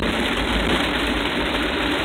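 Steady cabin noise of a vehicle driving in heavy rain: engine and road noise with rain hitting the windshield.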